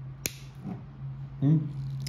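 Caran d'Ache Dunas fountain pen's plastic cap clicking shut onto the metal ring on the section, a single sharp click about a quarter of a second in.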